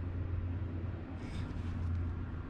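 Low steady background hum, with a faint brief rustle a little past a second in.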